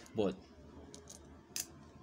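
A short, sharp click from the metal carburetor conversion kit being turned in the hands, about one and a half seconds in, with a couple of fainter clicks just before it.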